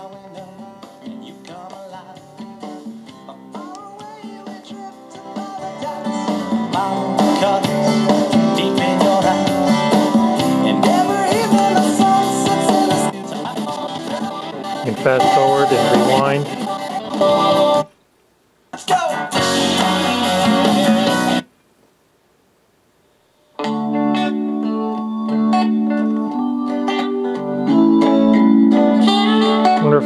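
Band music with guitar playing from a CD through the Sony CMT-NEZ30 micro stereo's small bookshelf speakers, with the bass set to +3. About 18 seconds in the music stops, a short snippet plays, and after about two seconds of near silence a new track starts with Hammond B3 organ chords as tracks are skipped.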